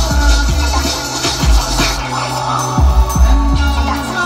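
Electronic music played in a DJ mix from a DJ controller, with heavy bass kicks that fall in pitch.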